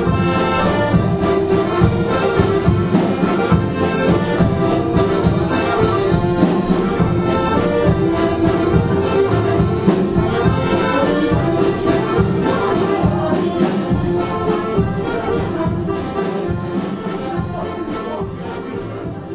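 Traditional Bourbonnais folk-dance music led by accordion, with a steady beat, growing softer near the end.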